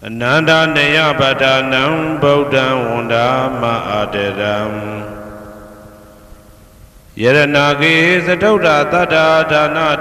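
A single low voice chanting Pali verses of a Theravada Buddhist chant in two long phrases. The first fades out about halfway through, and the next begins after a short pause.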